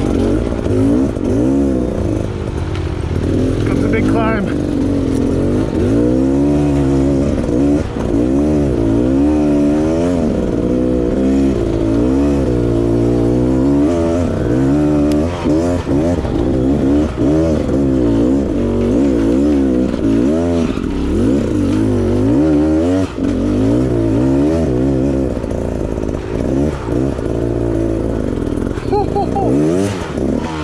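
Off-road motorcycle engine revving up and dropping back again and again, its pitch rising and falling about once a second while the bike is ridden over rough trail.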